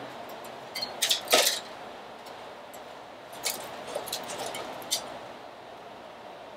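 Artificial silk leaves and a dry twig branch being handled, giving short bursts of rustling and crinkling about a second in and again between about three and a half and five seconds.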